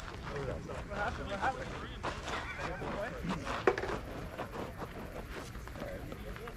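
Indistinct voices talking, with one sharp knock a little past halfway through.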